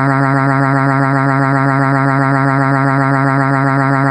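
A computer text-to-speech voice holding one long vowel at a flat, unchanging pitch, without a break.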